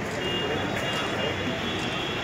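Steady outdoor din of traffic and indistinct voices, with a few brief high tones mixed in.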